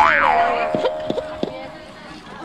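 Cartoon-style comic sound effect: a tone swoops up and back down, then holds steady for about a second and a half with a few short clicks on it.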